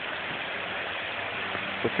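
Steady rush of water from a pond waterfall pouring into a koi pond.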